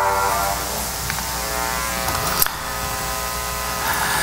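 Steady electrical hum and buzz from a hall's sound system, with the last of a music track fading out in the first half second and a single click about two and a half seconds in.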